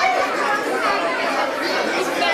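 Indistinct chatter of many voices talking at once in a crowded restaurant dining room.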